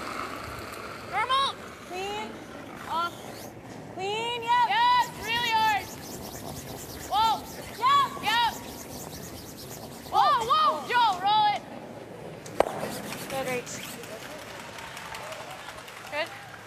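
Curlers shouting sweeping calls, short high-pitched yells in bursts, each rising and falling in pitch, over the steady hiss of brooms on pebbled ice. One sharp click sounds about twelve and a half seconds in.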